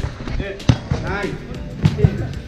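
Futsal ball being kicked on artificial turf: two sharp thuds a little over a second apart, with players' voices around them.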